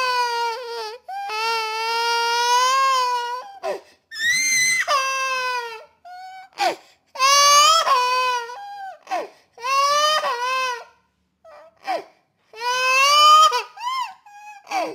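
Baby crying: about six long, high-pitched cries, each one to two and a half seconds, with short pauses between them.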